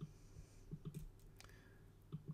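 A few faint computer mouse clicks, most around the middle, over a low steady room hum.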